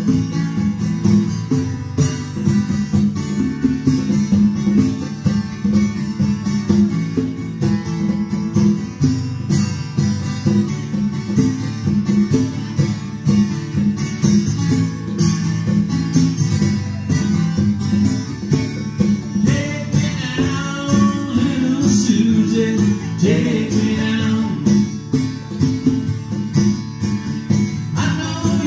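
Live acoustic guitar and hand-played congas performing a song's instrumental passage, with steady rhythmic drum strikes under the guitar. A man's singing comes in near the end.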